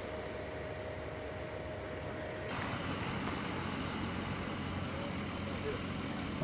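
Roadside ambience of vehicles running at idle, a steady low hum under a noisy haze, with indistinct voices. The sound changes abruptly about two and a half seconds in.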